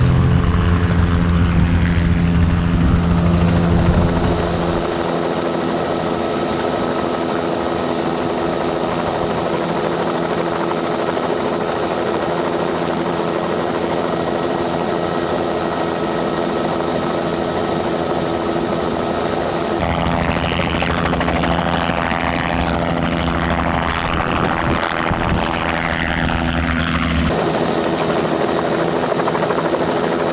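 Helicopter running: a loud, deep engine and rotor sound as it lifts off, giving way about four seconds in to a steadier, thinner engine and rotor sound heard from aboard the helicopter in flight. A rougher, noisier stretch comes from about twenty to twenty-seven seconds.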